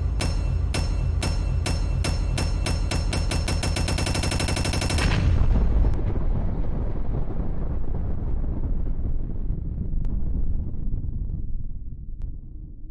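Intro sound effect: a run of sharp hits that speed up into a rapid roll, ending in an explosion about five seconds in, whose rumble slowly dies away.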